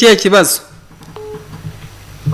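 A phone line heard through a mobile phone's speaker held up to a microphone: a woman speaks briefly, then the line goes quiet apart from one short beep about a second in.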